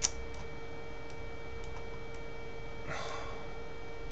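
Light clicks of a computer input device: one sharp click at the start, then a few faint scattered ticks, over a steady electrical hum. A short breath-like rush comes about three seconds in.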